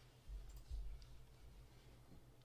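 Faint clicks over a brief low rumble a fraction of a second in, against a steady low hum.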